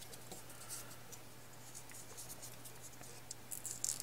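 Faint rustling and light scratching of folded paper origami modules handled between fingers, with scattered small ticks and a short, louder cluster of rustles near the end.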